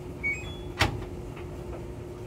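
LG top-load washing machine's control panel beeping as it is started: a few short high electronic beeps stepping upward in pitch about a quarter second in, then one sharp click just under a second in.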